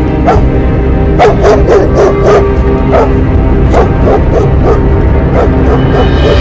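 A small dog barking in a run of about a dozen short, high yaps, over background music.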